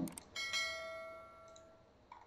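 A click followed by a single bright bell ding that rings out and fades away over about a second. It is the notification-bell sound effect of a subscribe-button animation.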